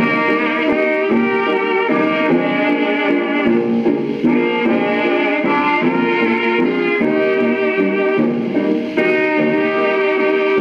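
Old-time dance band playing an instrumental passage of a waltz quadrille, reproduced from a 78 rpm record on a turntable.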